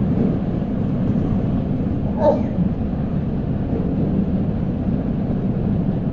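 Steady low rumbling background noise, with one brief voice-like sound a little over two seconds in.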